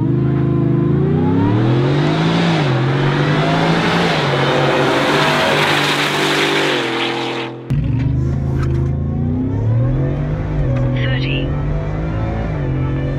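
Ford F-150's Whipple-supercharged 5.0 V8 under hard acceleration as the truck drives past, its pitch climbing and dropping back at each upshift. After a sudden cut about eight seconds in, hard acceleration through the gears is heard from inside the cab.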